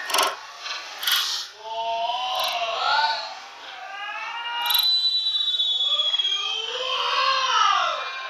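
Footballers shouting and yelling in a goalmouth scramble, with sharp knocks of the ball being struck. About five seconds in, a long high whistle starts and slowly falls in pitch.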